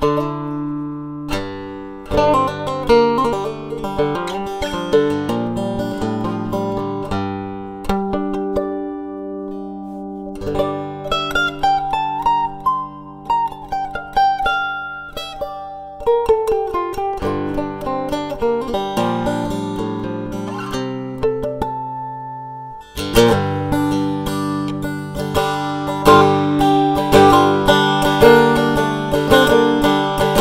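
Three-string cigar box guitar being picked: a melody over held low notes, with notes sliding up and down in pitch in the middle. The playing thins out and goes quieter about a third of the way in, then comes back denser and louder for the last third.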